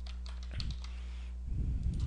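Computer keyboard keystrokes typing a short word, the clicks coming denser near the end, over a steady low electrical hum.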